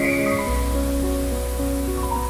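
Calm background music of long held notes that change slowly, with a deep low tone coming in about half a second in, over a soft steady hiss.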